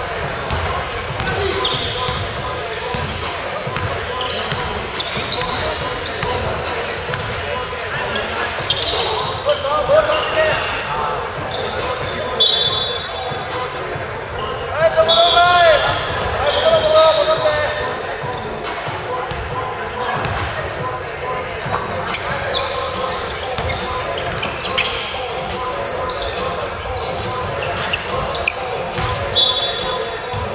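A basketball bouncing on a hardwood gym floor during a game, with players' voices calling out. Everything echoes in a large gymnasium.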